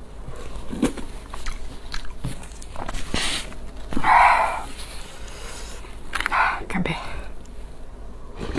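Close-miked eating of spicy ramen noodles: slurping and chewing, with scattered short clicks. A loud breathy burst comes about four seconds in.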